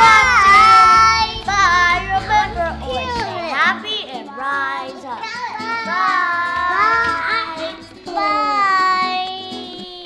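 Young children shouting and squealing excitedly in high, sliding voices over background music. The music's low end drops away after about three and a half seconds.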